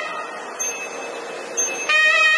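A pause in nadaswaram-style temple music: a single steady drone note holds under a hiss of background noise, and the melody comes back in near the end.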